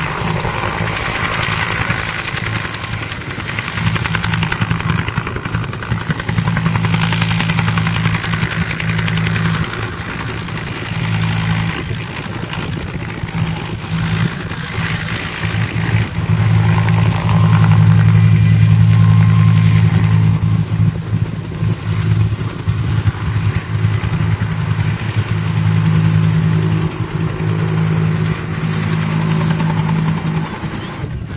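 Search-and-rescue helicopter flying low past, its rotor and turbine making a steady low drone that swells loudest a little past the middle and then eases off.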